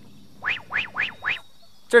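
A comic edited-in sound effect: four quick whistle-like chirps, each sliding upward in pitch, about a quarter-second apart.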